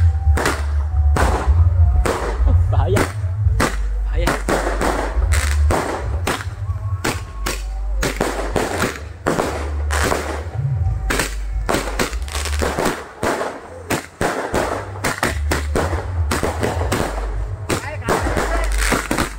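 Firecrackers and aerial fireworks going off in rapid, irregular bangs throughout, over a deep, steady low rumble.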